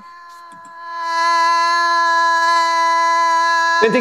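A woman's voice holding one long vowel at a steady pitch, the open 'a' of 'natural' (the /æ/ sound) practised as a pronunciation exercise. It grows louder about a second in, and a man's spoken word cuts in near the end.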